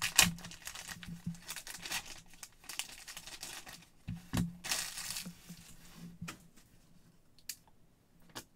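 Black plastic bag torn open and crinkled by hand, in irregular rustling bursts, the loudest right at the start and another about halfway through. A few light clicks near the end as the hard plastic card slab is handled and set down.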